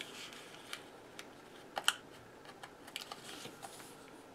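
Small clicks and light paper rustles of tweezers picking tiny number stickers off a sticker sheet and pressing them onto planner pages, with a sharp double click a little under two seconds in.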